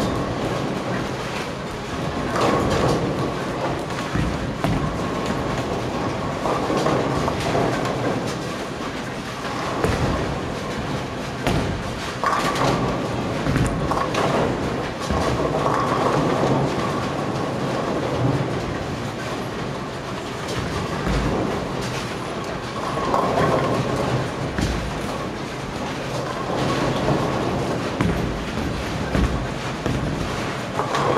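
Bowling alley din: bowling balls rolling down the lanes in a continuous rumble, with sharp crashes of balls hitting pins every few seconds.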